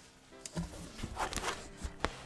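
A cardboard shipping box being opened by hand: short rustles, crinkles and scrapes of its flaps and packing, mostly about half a second in and around the middle, over quiet background music.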